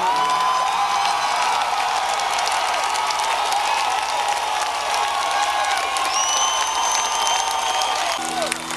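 Concert audience in a large hall applauding and cheering as the rock song ends. A long held whistle comes out of the crowd about six seconds in.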